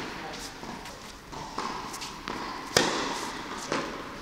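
Medicine ball thrown and caught during a tennis conditioning drill, with one loud slap of the ball about three seconds in, a lighter thud near the end and footsteps on the court. The sounds echo in a large indoor hall.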